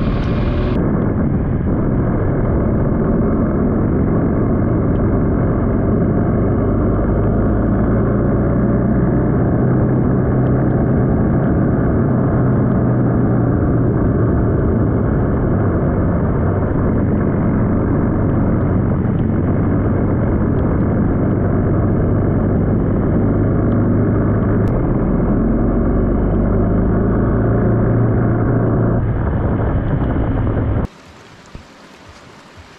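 Motorcycle engine running steadily at road speed, a low hum mixed with heavy wind rush on the microphone.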